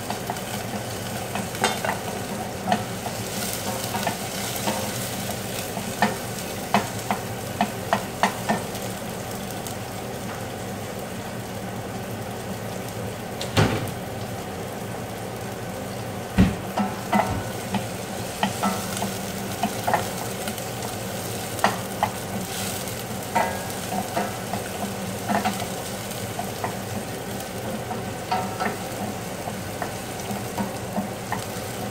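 Cooking at a gas stove: a steady sizzling hiss from a steel pot, broken by many short clinks and knocks of a utensil and the lid against the pot, two of them louder about halfway through.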